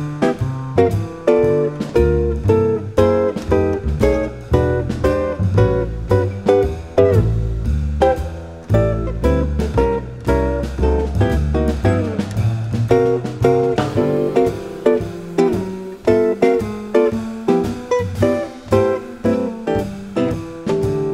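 Instrumental small-group jazz: a guitar plays plucked note lines over an upright bass walking a note roughly every half second, with drums keeping time.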